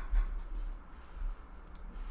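A few faint clicks from computer input over a low hum, the clearest near the end.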